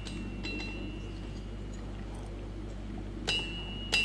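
A few sharp metallic strikes, each leaving a clear, high ringing tone behind it. The two loudest come near the end, about half a second apart.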